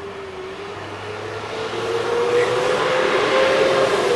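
A motor vehicle approaching on the street, getting louder, its engine note slowly rising over the growing rush of tyre noise.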